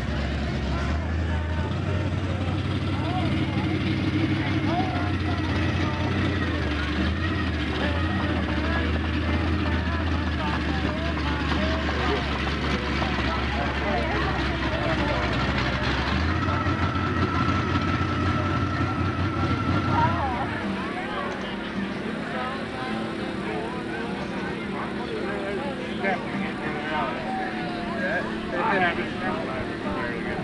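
An engine running steadily with a low drone, under the chatter of a crowd of onlookers. About two-thirds of the way through, the engine drone drops away and the voices remain.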